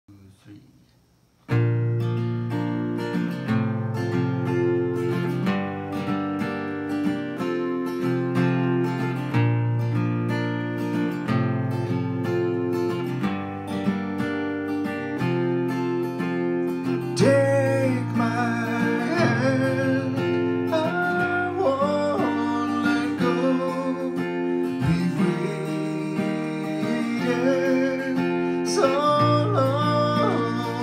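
Strummed acoustic guitar, starting about a second and a half in, with chords changing roughly every second and a half. A man's singing voice joins over the guitar about seventeen seconds in.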